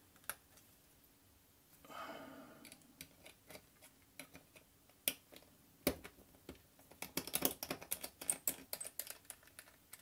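Small metal clicks and taps from a precision screwdriver working the screws of a laptop optical drive's thin metal casing. There is a short scrape about two seconds in and a busy run of clicks near the end.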